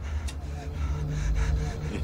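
A man's gasping breath over a low steady rumble, with a faint steady tone coming in about half a second in.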